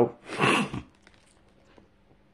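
A man's short breathy laugh, lasting about half a second.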